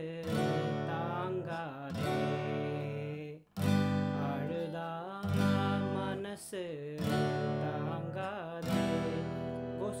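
Yamaha steel-string acoustic guitar strumming slow chords in E minor, with a strong strum about every second and a half and a brief break in the sound about three and a half seconds in. A man sings the Tamil lyric line over the chords.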